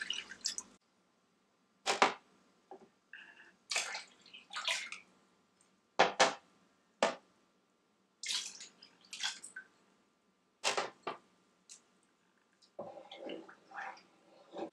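Milk poured from glasses into a pot of hot sugar syrup, heard as short splashes and sharp clinks, about one a second, as glasses are handled. Near the end, a spatula stirring the milky syrup in the pot.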